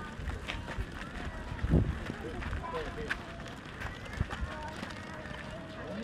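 Voices of passersby chatting on a crowded walkway, with footsteps and a couple of low thuds, one about two seconds in and one after four seconds.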